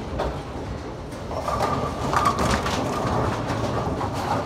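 Bowling ball rolling down the lane after release, a steady rumble that swells about a second in, with a few light knocks.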